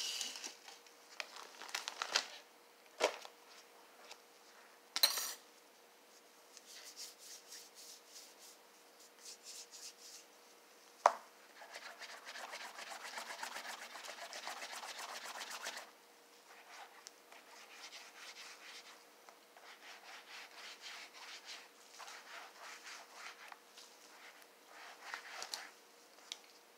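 Gloved hands rolling a rope of softened caramel back and forth on a silicone mat: soft, repeated rubbing strokes, denser and steadier for a few seconds in the middle. A single sharp knock about 11 seconds in.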